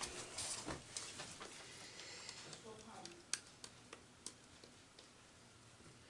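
Quiet handling noises of painting supplies: rustling during the first second and a half, then a few light, sharp clicks and taps as things are moved and set down.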